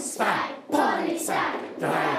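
A class of young children chanting together in rhythm, with hand clapping, as part of a classroom language song or game.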